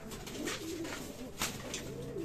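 Domestic pigeons cooing softly in a loft, with a few short clicks.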